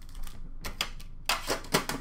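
Trading cards and pack wrappers being handled and tapped down: a few light taps, then a quick run of sharp clicks in the second half.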